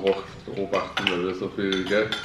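Metal spoons clinking and scraping against ceramic bowls as people eat, in short light knocks under the talk.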